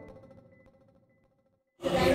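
Background music dying away, with a last held note fading out over about half a second, then dead silence, then live room ambience cutting in abruptly near the end.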